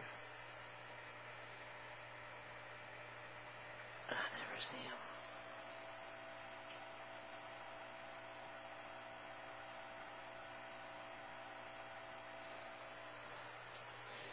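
Faint steady hum and hiss, with one brief whispered word about four seconds in.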